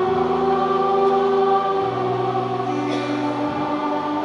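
Church choir singing a slow hymn with instrumental accompaniment: long held chords that change every second or two.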